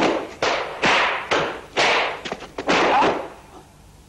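Dubbed fight sound effects of punches and kicks landing: a quick run of about six hard hits, each with a short rushing tail, over about three seconds.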